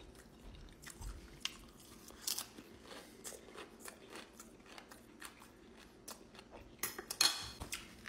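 Close-up chewing of a mouthful of rice bowl and Doritos tortilla chips: crunching with many small crisp clicks. About seven seconds in, a louder crinkling burst as a plastic water bottle is picked up.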